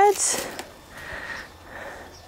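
A person's short sniff just after a word ends, then soft breath noise through the pause.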